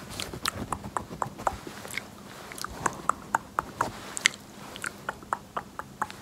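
Close-miked ASMR mouth sounds: wet clicks and smacks, irregular, a few per second.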